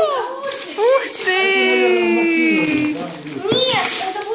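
Children's wordless voices. Through the middle, one child holds a long drawn-out vocal sound for about a second and a half, slowly falling in pitch, with shorter gliding calls before and after it.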